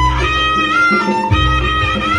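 Live jaranan accompaniment: a high melodic instrument playing a sliding, ornamented tune over deep low notes that recur about every second and a bit.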